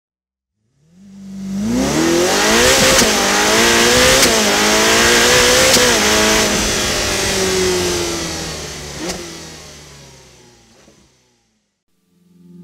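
Car engine accelerating hard through several gear changes, the pitch climbing and dropping back at each shift, then fading out. It starts about a second in.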